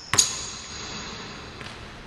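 A basketball strikes a gym floor once, sharply, just after the start, and a high ringing hangs on after it for over a second.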